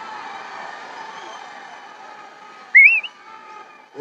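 Steady background crowd noise, then, about three-quarters of the way in, one short, loud whistle that rises and wavers in pitch: a person whistling.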